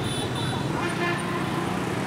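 City street traffic: a steady wash of motorbike and car engines passing, with a low steady hum.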